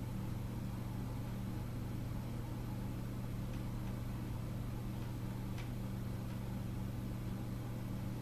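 Steady low machine-like hum, unchanging, with a faint tick a couple of times.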